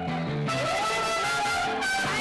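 Mariachi band playing, with trumpet and guitars.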